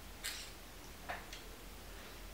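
Quiet room with a few faint, short clicks and a brief soft puff of noise.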